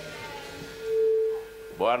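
Public-address feedback ring: one pure, steady tone swells up and dies away over about a second as the microphone changes hands. A man starts speaking right at the end.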